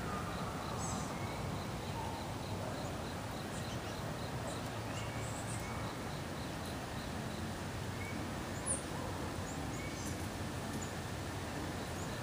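Outdoor ambience: a steady, low background noise with a few faint, high bird chirps scattered through, including a short run of quick, evenly spaced chirps in the first few seconds.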